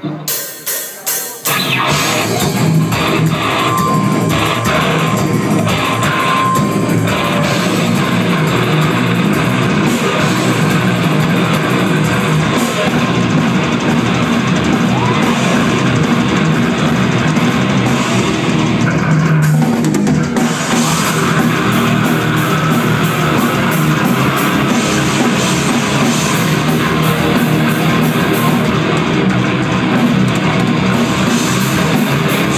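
Heavy metal band playing live on drum kit, distorted guitar and bass. The song opens with a few sharp hits in its first second or so, then the full band plays loud and steady.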